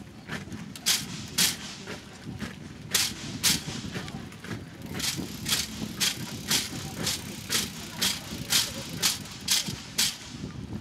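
Military drill team marching with rifles: sharp clacks of boot heels and rifle handling in unison, in pairs at first, then a steady two a second from about halfway through, over a low crowd murmur.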